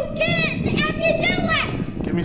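A young child talking in a high voice, in short, lively phrases.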